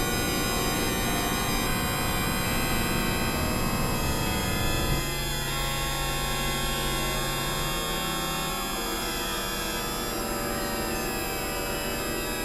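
Experimental synthesizer drone music: many layered steady tones over a dense low rumble. The low end thins out about five seconds in, and faint falling glides follow.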